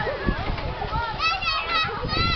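Children's voices shouting and chattering, with a run of high-pitched calls about a second and a half in.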